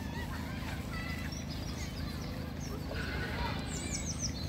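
Small birds singing and chirping, with a run of quick, high, falling notes near the end, over a steady low rumble.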